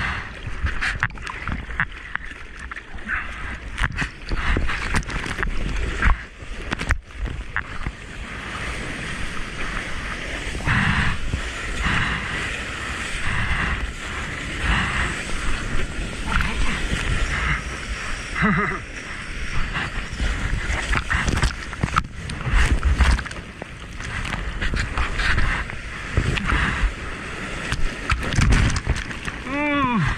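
Sea water splashing and rushing against a waterproofed action camera as a surfer paddles and a wave breaks alongside. Many sharp droplet hits and sloshes, with a denser rush of whitewater in the middle.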